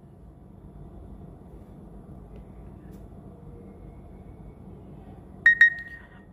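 Faint steady hiss, then near the end a short high electronic beep from a phone's notification sound, the alert for an incoming email.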